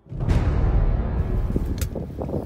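Strong wind buffeting the microphone, a dense low rumble that starts abruptly, with one short sharp click near the end.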